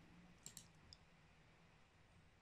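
Near silence: room tone, with two faint computer-mouse clicks, one about half a second in and one about a second in.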